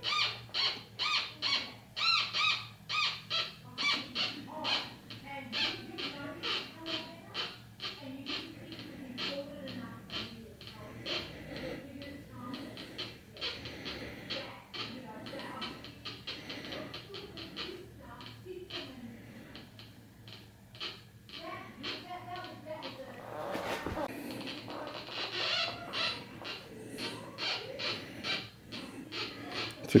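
Homemade Minipulse Plus pulse induction metal detector's audio output: a regular series of short beeps, about two or three a second, over a steady low hum, as a small ring is passed by the coil. The beeps are strongest in the first few seconds and again near the end, signalling the detector picking up the ring.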